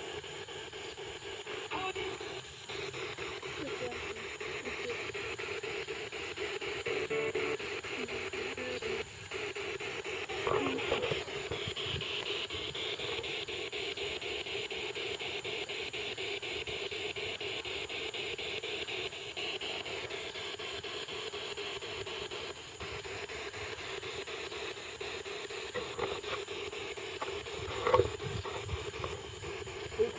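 Steady droning night ambience: a constant low hum with a higher, hiss-like band above it. A brief sharp sound comes about two seconds before the end.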